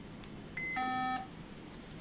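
A two-part electronic beep from an Apple II computer's speaker as the program starts: a brief high tone, then a lower buzzy tone, together about half a second long, starting about half a second in.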